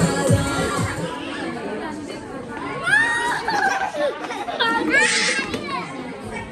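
Background music with a beat, over chatter and children's high-pitched shouts and calls in a large room.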